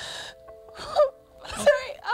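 A woman crying: a sharp gasping breath, then two short sobbing cries, over soft background music with held notes.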